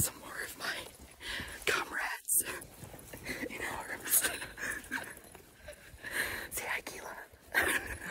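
People whispering in short, breathy bursts.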